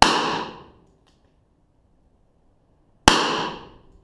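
Two shots from a Smith & Wesson Governor revolver firing .45 Winchester White Box rounds, about three seconds apart, each ringing out for most of a second.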